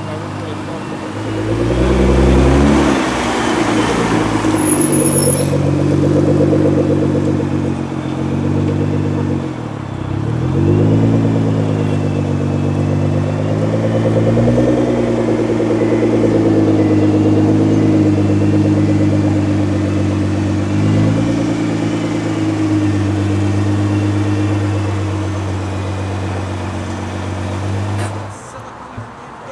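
Nissan GT-R's twin-turbo V6 running as the car pulls away at low speed, its engine note rising and falling several times as it is driven off.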